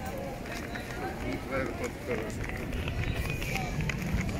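Busy pedestrian street ambience: passersby talking in snatches over a steady low rumble of crowd bustle.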